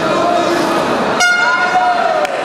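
Crowd voices shouting, then a little over a second in a timekeeper's signal horn blares: one steady, bright, buzzing tone held to the end. It marks a stop in the bout as the referee moves in.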